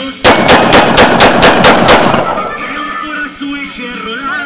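A pistol firing eight shots in quick succession, about four a second, each shot ringing out with a short echo.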